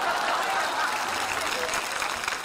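Studio audience applauding, a steady sound of many hands clapping together.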